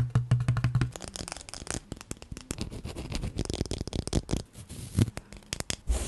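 Fingernails tapping, scratching and clicking on hard objects close to a microphone, beginning with a plastic watercolour paint palette. It is a fast, irregular run of small clicks and rustles.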